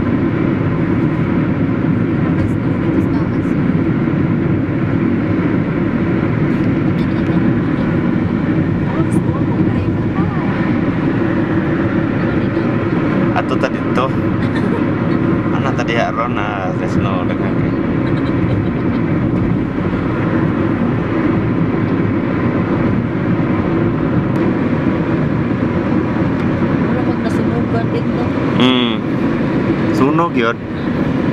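Steady road and engine noise inside a car's cabin while driving at highway speed, with brief wavy pitched sounds about halfway through and again near the end.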